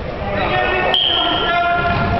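Players' voices shouting and calling across a large echoing sports hall, with a sharp kick of the futsal ball just under a second in.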